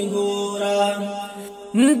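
Unaccompanied vocals of a Pashto naat: a hummed vocal drone held on one steady note that slowly fades. Near the end a male voice starts the next sung line, sliding up in pitch.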